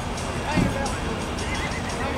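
A short, loud livestock call about half a second in, over arena crowd chatter.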